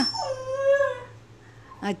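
A puppy gives one drawn-out call lasting about a second, its pitch dropping at the start and then holding level.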